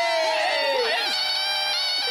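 Several voices holding a long, drawn-out shout together. The main pitch slides down and breaks off about a second in, and a new held note starts near the end.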